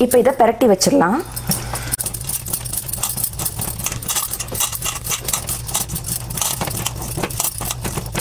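A hand mixing wet, spice-coated fish pieces in a stainless steel bowl, with the glass bangles on the wrist clinking and jingling in a quick, uneven run of small clicks.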